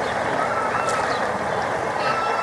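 Steady rushing and bubbling of hot tub water churned by the jets, with a faint distant voice over it.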